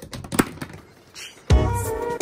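A few light clicks and taps of a hand handling the wire cage bars. About one and a half seconds in, a thump starts background music with brass.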